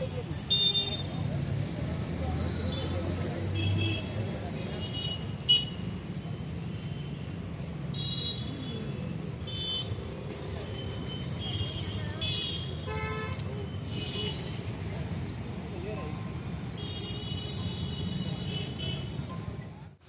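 Road traffic running steadily, with short vehicle horn toots every second or two and a longer honk near the end, under voices.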